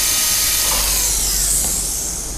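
Dental handpiece cutting into a model molar with a fissure bur: a steady, loud high-pitched whine with a grinding hiss, easing off a little near the end as the bur comes away from the tooth.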